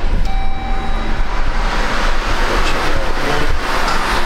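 Chrysler Pacifica's 3.6-litre V6 engine starting on the push button and running at a fast idle, getting somewhat louder about two seconds in.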